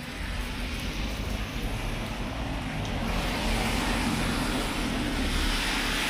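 Street traffic on a wet road: a steady hiss of tyres on wet asphalt over a low engine rumble, swelling a little in the second half as a vehicle passes.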